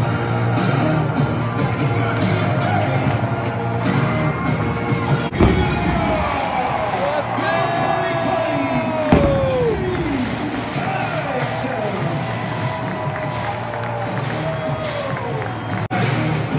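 Stadium PA music playing loudly over a crowd cheering and whooping, with several calls sliding down in pitch through the middle. Two sharp thumps stand out, about five and nine seconds in.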